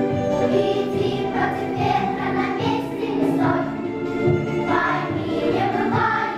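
Young girls' choir singing a song, over an accompaniment with a low bass line.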